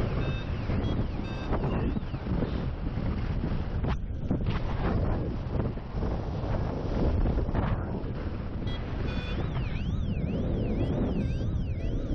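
Airflow rushing over the microphone in flight, with a paragliding variometer's sink alarm: a siren-like tone sweeping up and down over and over, sounding near the start and again through the last few seconds. The alarm signals that the glider is descending fast.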